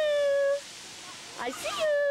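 A young child meowing like a cat: a long drawn-out meow ends about half a second in, and a second one rises and holds steady from about a second and a half in.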